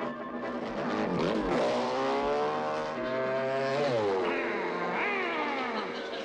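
Cartoon sound effect of a motor whining and revving, its pitch repeatedly gliding up and down, with music underneath.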